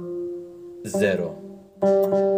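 Electric guitar playing a slow single-note pattern on the G and D strings, fretted notes alternating with open strings, each note left to ring with reverb. A new note is picked about a second in and another near the end.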